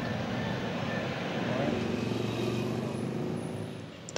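Roadside traffic, passing motor vehicle engines, running steadily; it swells a little in the middle and fades near the end.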